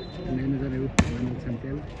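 A single sharp smack of a volleyball about a second in, amid shouting voices of players and spectators.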